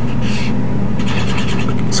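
Marker pen drawing lines on paper, faint strokes early and again through the second half, over a steady low hum and hiss.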